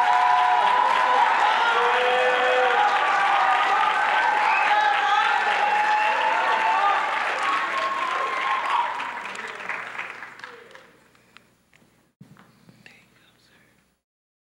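Audience applauding, with voices calling out over the clapping. It dies away about ten seconds in, leaving only faint small knocks.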